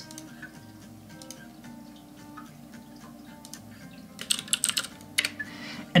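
A quick burst of typing on a computer keyboard about four seconds in, over quiet background music.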